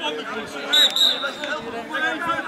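Several men talking over one another, with a short high whistle lasting well under a second near the middle.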